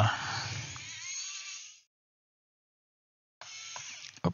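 Pen-style electric screwdriver whirring as it backs out a screw from a laptop's plastic bottom case. It runs for about the first two seconds and starts again near the end.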